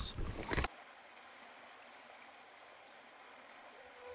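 A brief rush of river water noise that cuts off abruptly under a second in, leaving near silence with only a faint hiss.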